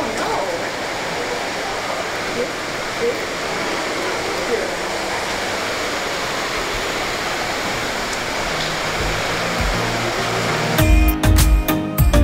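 Steady shop ambience, an even hiss with a few faint distant voices. About nine seconds in, background music fades in and comes up loud near the end.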